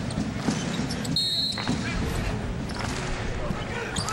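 Basketball arena sound during a college game: crowd noise with a basketball bouncing on the hardwood court, and a brief high-pitched tone about a second in.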